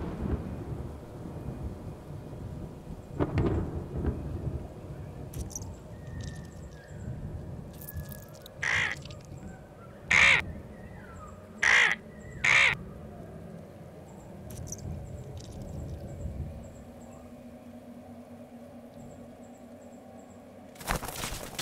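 Thunder rumbling, with a louder peal about three seconds in, then a crow cawing four times about halfway through, the last two caws close together.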